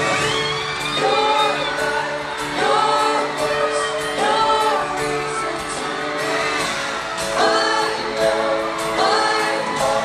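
Male pop vocal group singing live with band backing, a held sung phrase every second or two over sustained accompaniment, heard from the stands of a large arena.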